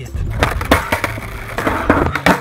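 Skateboard clattering on asphalt during a failed trick attempt: the deck and wheels knock and slap against the ground several times as the board tips up on its edge.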